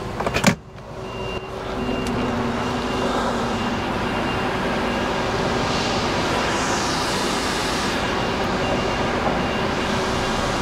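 A single loud knock about half a second in, then a lorry's diesel engine running steadily as the truck moves off slowly.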